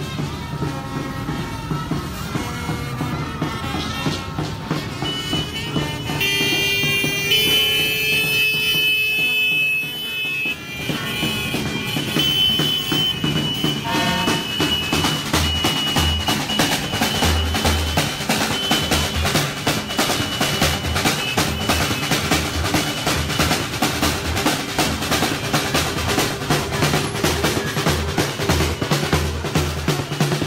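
Marching drum band of large bass drums and snare drums playing a dense, steady beat, strongest in the second half. Several long high tones sound over it before that.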